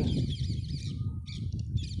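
Small birds chirping in quick, repeated high notes, densest in the first second and returning near the end, with a brief clear whistled note about a second in. A steady low rumble runs underneath.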